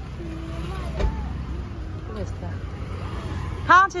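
Steady low rumble of street traffic with faint voices in the background, and a single click about a second in; a person's voice breaks in loudly near the end.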